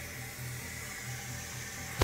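Steady low hiss with a faint low hum underneath, an even background noise in a room with no distinct event.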